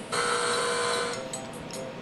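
A steady electronic tone of several held pitches, played through laptop speakers, lasting about a second before dropping to fainter held tones.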